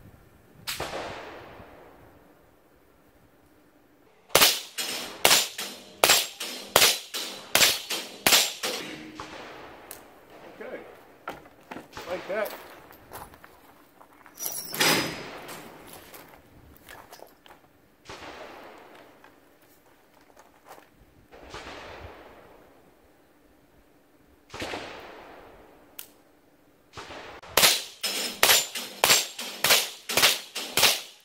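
Semi-automatic .22 LR gunfire from a Windham Weaponry AR-15 fitted with a CMMG .22 LR conversion kit: sharp cracks, each with a short ringing tail. There is a single shot, then a rapid string of about ten shots, then single shots a few seconds apart, and another rapid string near the end. The action cycles each round without a hitch.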